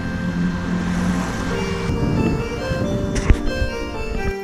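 Background music of sustained pitched notes and a melody, with a single sharp click about three seconds in.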